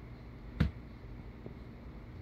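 A single sharp click about half a second in, over a faint steady low hum.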